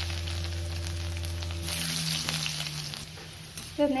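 Chopped garlic frying in hot oil with mustard and fenugreek seeds in a wok, sizzling steadily. A low steady hum runs underneath and stops about halfway through.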